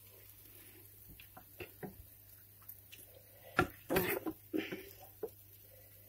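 A few light clicks and knocks of kitchen utensils on pans, with two louder knocks a little over halfway through, over quiet room sound.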